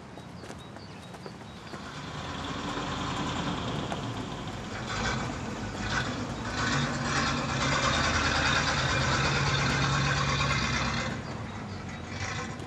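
A ZIL-130 lorry's engine running as the truck drives up. It grows louder from about two seconds in to a steady low drone, holds it, and eases off near the end as the truck draws to a stop.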